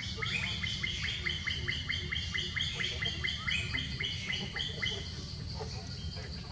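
A bird calling in a rapid, even series of short falling notes, about four a second, stopping about five seconds in.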